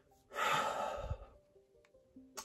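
A man's long, breathy exhale lasting about a second.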